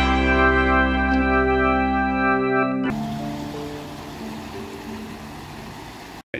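Background music: long held chords growing steadily quieter. About halfway through the higher notes drop away, leaving a few softer sustained notes.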